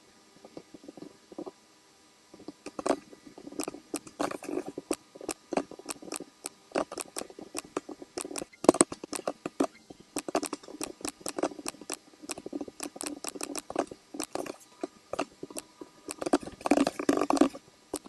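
Computer mouse clicks and keyboard keystrokes, irregular and several a second, with a short pause early on and a dense run of typing near the end.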